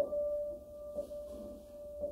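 Solo piano striking the same single note over and over, about once a second, each note ringing on until the next, in a slow, sparse improvisation.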